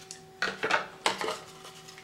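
Hard plastic holsters being handled and swapped between the hands: two short clattering scrapes about half a second apart.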